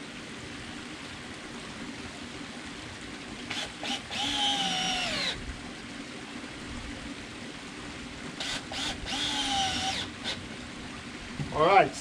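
Handheld power drill driving screws into wooden landscape timbers: two runs of the motor whine, each about a second and a half long, with the pitch dropping as each run stops. A few short clicks come just before each run.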